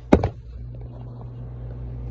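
A sharp click just after the start, then a steady low rumble.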